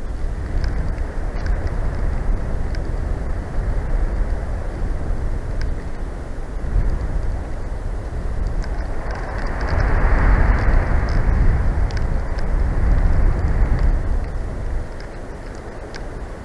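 Wind buffeting an outdoor microphone: a loud, gusty low rumble that swells for a few seconds in the middle and eases off near the end.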